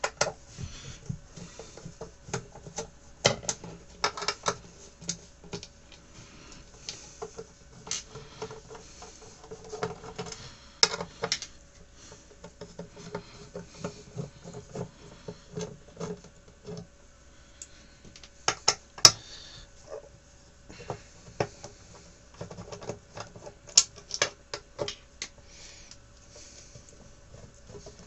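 Screwdriver backing screws out of the panel of a T-862 rework station: irregular small clicks and scratches, with one sharper, louder click about 19 seconds in.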